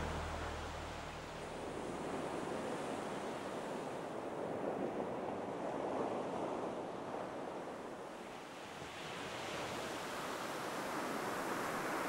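Ocean surf breaking and washing up a beach: a steady rushing that swells and eases a few times.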